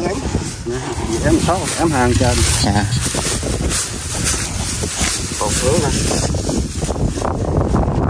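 Wind buffeting the microphone in a steady low rumble, with voices talking over it at times and a few scattered knocks.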